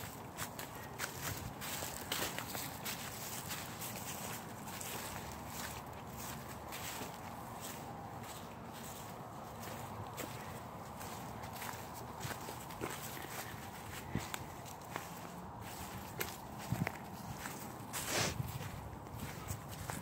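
Footsteps of people walking: a string of irregular steps over a faint steady background, with one louder knock near the end.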